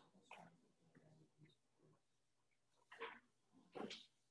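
Near silence: faint room tone with a few brief, faint noises, the clearest about three seconds in and again near the end.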